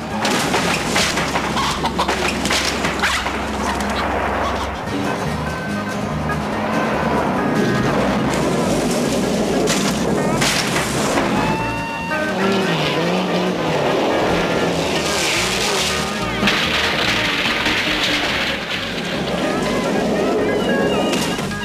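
TV action-scene soundtrack: background chase music mixed with race car engines, with a car smashing through a wooden fence about halfway through.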